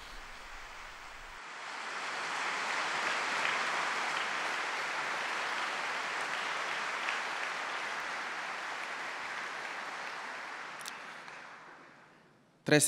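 Audience applauding. The clapping swells about a second and a half in, holds steady, and fades away near the end.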